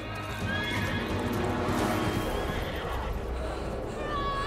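A horse whinnying in the din of a battle, once about half a second in and again around two seconds in, over a dramatic film score.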